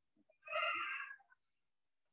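A single short, high-pitched animal cry lasting about half a second.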